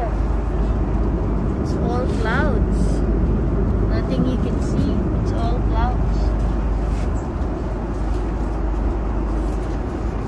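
Airbus A330 airliner cabin in flight: the engines and the airflow past the fuselage make a steady, loud, low rush.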